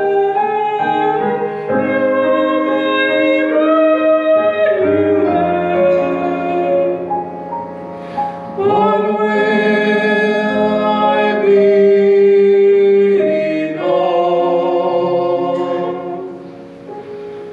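A church chancel choir singing an anthem with instrumental accompaniment, in long held notes.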